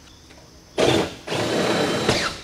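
Power drill running in two bursts: a short one, then a longer one of about a second.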